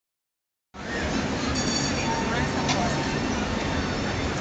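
Outdoor city street sound: a steady traffic rumble with people's voices in the background, cutting in just under a second in.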